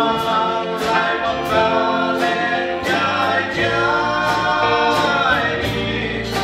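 Live worship band: a man singing long, held notes over guitar and bass, with a cymbal ticking in a steady beat.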